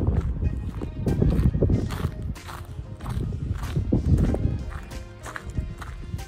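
Wind rumbling and buffeting on the microphone, with music and a regular click about twice a second.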